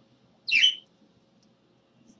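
A caged pet bird gives one short, high chirp about half a second in.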